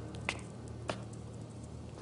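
Two faint, short clicks about half a second apart over quiet room tone, with the last of the background music fading out.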